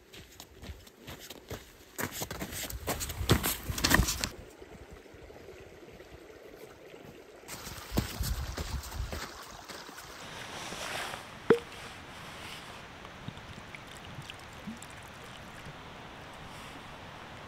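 Hiking boots crunching on a loose gravel and stone track as a walker passes close by, twice, with trekking-pole tips clicking on the stones. A steady low hiss lies underneath.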